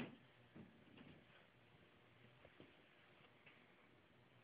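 Near silence: faint room tone with a few soft ticks and taps, the clearest right at the start.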